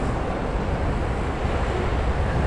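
Steady, rumbling wind noise buffeting the microphone.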